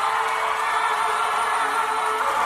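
A cappella group singing, holding a sustained chord of long, steady notes.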